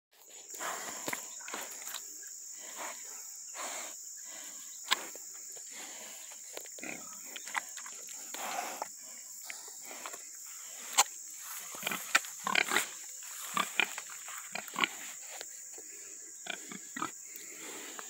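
Pigs grunting and snuffling as they root through loose soil, in short irregular bursts with a few sharper snorts.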